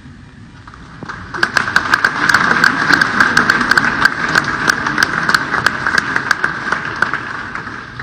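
Group applause: many hands clapping, starting about a second in and easing off just before the end.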